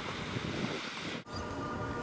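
Wind noise on the microphone, broken by an abrupt cut a little over a second in. After the cut a steady held chord of several tones sounds over the wind.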